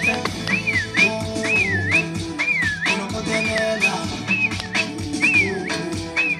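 Dance music with a high whistling melody of quick up-and-down swoops, about two a second, over a beat of drums and bass.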